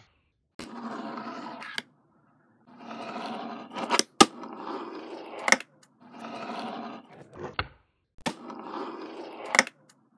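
Fingerboard wheels rolling across a tabletop in about five runs of roughly a second each, every run ending in a sharp clack of the board's deck or tail striking the table.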